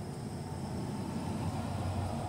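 Low, steady rumble of a motor vehicle, growing slowly louder near the end.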